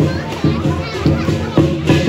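Lion-dance percussion (drum with cymbals and gong) playing a steady beat for the lion's pole routine, with crowd voices mixed in.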